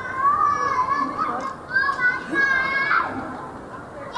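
A child's high-pitched voice calling out in several drawn-out squeals with short breaks between them.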